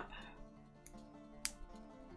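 Quiet background music with a few light metallic clicks of pliers and jump rings as an open ring is threaded through a chain maille weave; the sharpest click comes about one and a half seconds in.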